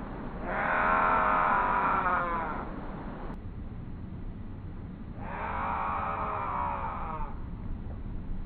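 Gray catbird giving two drawn-out, nasal mewing calls, each about two seconds long: one near the start and one just past the middle.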